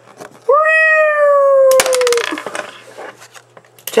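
A long high-pitched cry, held for about a second and a half and sliding slowly down in pitch, then a brief fast clattering rattle.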